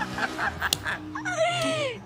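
A person's voice: a few spoken syllables, a sharp click, then a long high-pitched wail that falls in pitch.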